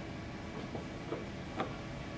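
A few faint clicks of plastic centrifuge tubes being set into a plastic tube rack, over a steady low room hum.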